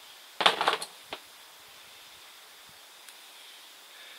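Bonsai scissors cutting back a juniper branch: a short, loud metallic snip and rustle of several quick clicks about half a second in, then a single sharp click about a second in.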